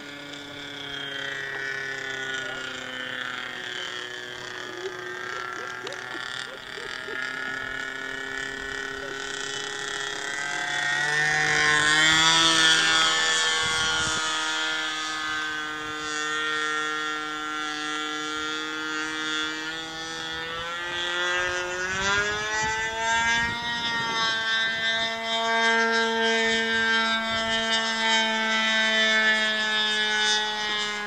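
Rossi .53 two-stroke glow engine of a CAP 232 model aerobatic plane in flight overhead. It runs continuously, its pitch gliding up and down, loudest about twelve seconds in, then climbing to a higher steady note a little past twenty seconds.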